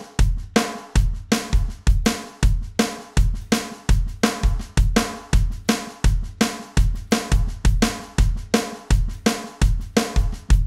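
Electronic drum kit playing the 'train beat': a steady single-stroke roll on the snare, with the right-hand strokes accented on beats two and four, over a recurring bass drum pattern.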